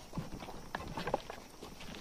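Footsteps and light, irregular knocks and crunches over burnt debris and rubble.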